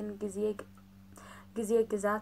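Speech: a voice talking in Amharic, breaking off for about a second in the middle with a faint breath before it resumes, over a low steady hum.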